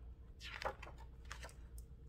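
Faint clicks and rustles of a picture book's pages being handled and turned, with a few small ticks about half a second in and again later.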